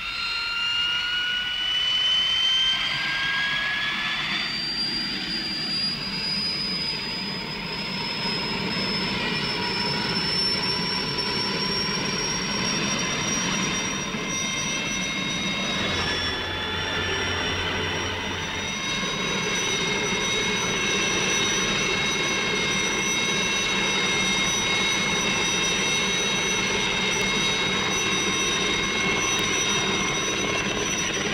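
Turbine helicopter engine spooling up, its whine rising in pitch over the first few seconds, then holding a steady high whine over constant engine and rotor noise.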